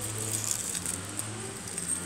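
Weeds being pulled by hand from the gaps between brick pavers, a few faint rustles and ticks over a steady low hum.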